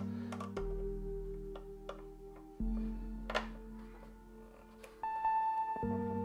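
Background music of soft, sustained chords that change every couple of seconds, with a few faint clicks from hands handling computer parts.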